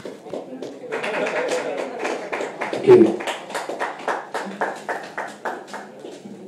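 Small audience applauding at the end of a song, with individual claps clearly audible over crowd chatter. A voice calls out loudly about halfway through, and the clapping thins out near the end.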